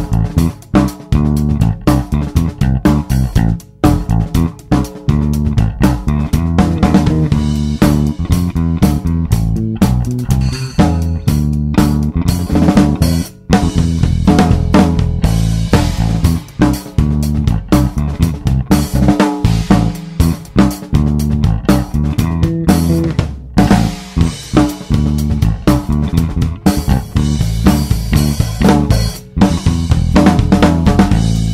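A funk bass line on electric bass, played over a funk drum-kit beat, with a steady rhythm throughout.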